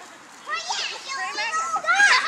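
Children playing, their high-pitched voices calling out without clear words from about half a second in and growing louder near the end.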